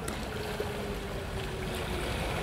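Outdoor lakeshore ambience: a steady low rumble of wind and water, with a faint thin hum that starts about half a second in and sinks slightly in pitch.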